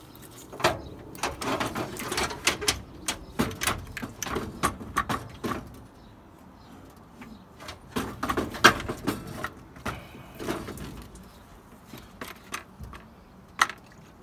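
A car radiator with plastic tanks and attached fan shrouds being worked loose and lifted out of the engine bay: irregular plastic clunks, knocks and scrapes, busiest in the first half, with a few more knocks later.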